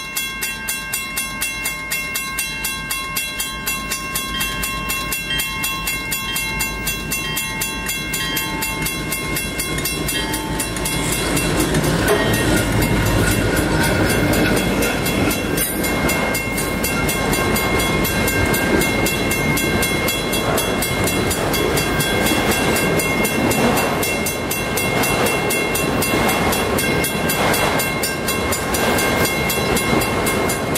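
A diesel-hauled freight train approaches and passes. The sound grows louder about 11 seconds in as the train reaches the crossing, then a long string of autorack cars rolls by with steady wheel and rail clatter.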